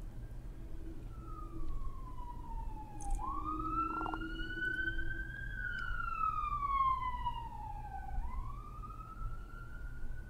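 An emergency vehicle siren wailing, its pitch sliding slowly up and down in long sweeps of a few seconds each, over a low steady hum.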